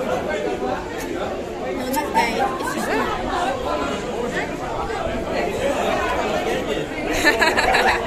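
Crowd chatter: many people talking over one another at once, with no single voice standing out.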